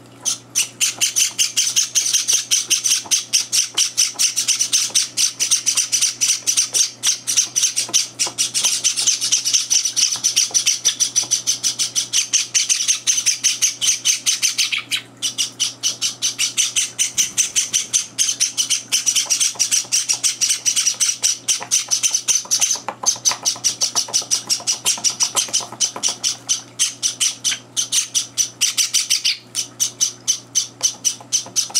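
Java sparrow chicks giving begging calls while being hand-fed: a fast, continuous run of short high chirps, many a second, with brief breaks about halfway through and again a few seconds later.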